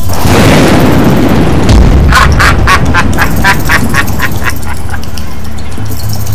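Film soundtrack over background music: a sudden loud dramatic hit that dies away over a second or so. From about two seconds in, a rapid run of short, evenly spaced pitched pulses follows, about five a second, for some three seconds.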